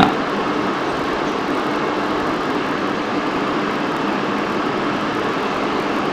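Steady room background noise: an even hiss with a faint low hum, unchanging throughout, like a running fan or air conditioner in a small room.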